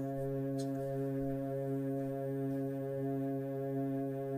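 Electronic keyboard holding one sustained chord, steady and unchanging: the song's closing chord after the vocal ends.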